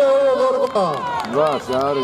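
People shouting, several voices calling out loudly: one long held call, then calls that swoop up and down in pitch.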